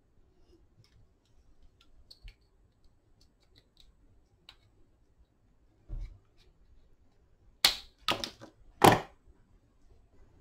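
Handling of a cordless drill's plastic trigger switch assembly as it is taken apart: faint light clicks, a soft knock about six seconds in, then three loud, sharp plastic clicks within about a second and a half near the end.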